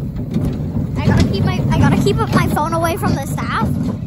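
Riders screaming and shouting in high voices on a small roller coaster, over the steady rumble of the car running along the track. The loudest cries come about a second in and last until near the end.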